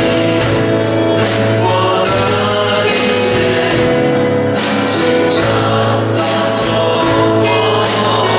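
A small worship team of men and women singing a Chinese worship song together into microphones, over instrumental accompaniment with a steady beat.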